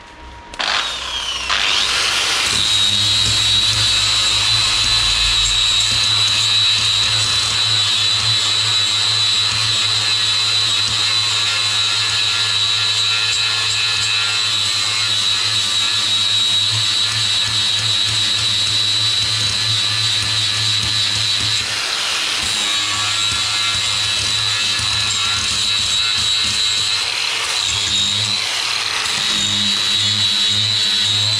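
Angle grinder spinning up in the first two seconds, then running at a steady high whine with the rough noise of its cleaning disc grinding against the steel wheel arch. The load and pitch shift about two-thirds through, and again near the end as the disc is moved to another spot.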